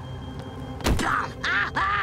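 A single sharp thud about a second in, followed by a cartoon boy's snarling, animal-like vocal noises, over faint background music.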